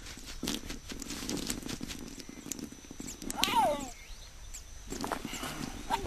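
A baboon's short call falling in pitch about three and a half seconds in, after about three seconds of a rapid, dense spattering patter.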